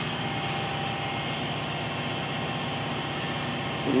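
Steady mechanical hum with a few faint constant tones, even in level throughout.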